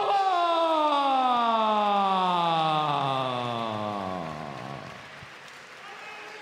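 A ring announcer's voice drawing out a fighter's name in one long call that slides steadily down in pitch over about five seconds and fades away.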